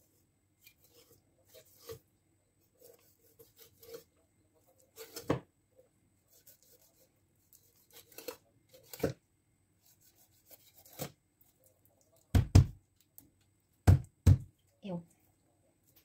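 A kitchen knife cuts crosswise slashes into a whole rainbow trout on a wooden cutting board. The blade slices through skin and flesh with soft rubbing sounds, and now and then knocks against the board. The loudest knocks come as a cluster of three late on.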